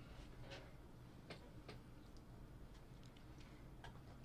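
Near silence: room tone with a low hum and a few faint, irregular clicks.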